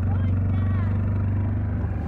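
ATV engine running at a steady speed, a constant low hum.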